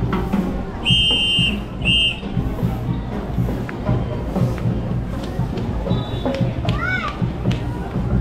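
Parade music with a steady beat, cut through by two short, shrill whistle blasts about one and two seconds in, over crowd voices.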